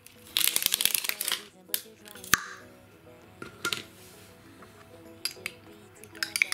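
A glass baby-food jar being opened by hand: a crackly run of crinkling as the plastic seal wrapper is torn off, then one sharp click as the lid comes open, followed by a few light clinks. Background music plays throughout.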